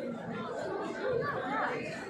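Crowd chatter: many people talking at once in a large banquet hall, with no single voice standing out.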